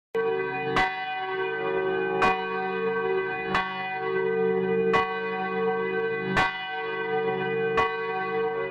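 A single church bell tolling, struck seven times, mostly about one and a half seconds apart, each stroke still ringing when the next one falls.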